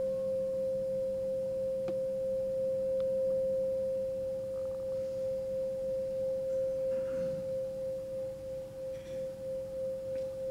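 A singing bowl ringing one steady, nearly pure tone. About halfway through it begins to waver slowly in loudness as it starts to fade.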